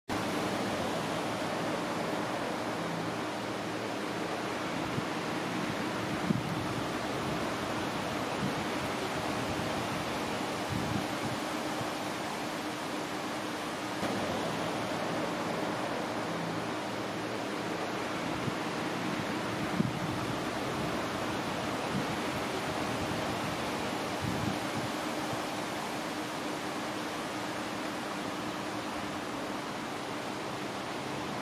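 Electric articulated bus charging from an overhead pantograph charger: a steady rushing noise with a faint steady low hum. Two brief sharp clicks stand out, about six seconds in and near two-thirds of the way through.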